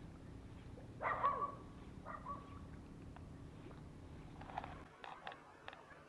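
An animal calling twice, about a second apart: each call is a short falling note that levels off on a held tone. This is heard over a steady low background rumble that stops abruptly near the end.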